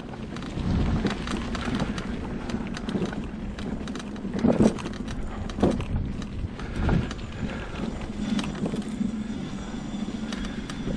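Homemade three-wheel electric mobility scooter riding over a leaf-covered woodland path: a steady motor hum, with the tyres crackling over dry leaves and twigs.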